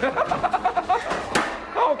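A person's voice in a quick run of short, evenly spaced pitched bursts like a staccato laugh. A single sharp knock comes a little past the middle, and a laugh follows near the end.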